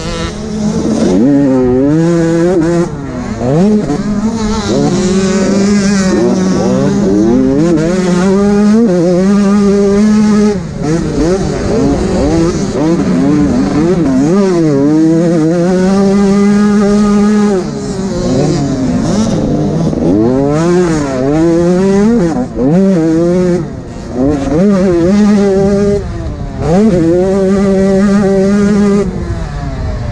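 An 85cc two-stroke motocross bike's engine being ridden hard. Its pitch climbs steeply and drops off again and again as the rider accelerates, shifts and rolls off the throttle, with short lulls every few seconds. Heard close up from the rider's helmet.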